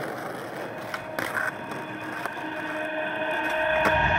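Skateboard wheels rolling over rough asphalt, a continuous rumble that slowly gets louder, with a couple of light knocks from the board about a second in.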